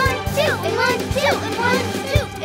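Children's background music with high, squeaky cartoon-character voices calling out over it in short sliding bursts.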